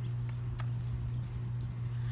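A steady low hum with a few faint ticks and rustles as a hardcover picture book's pages are handled and turned.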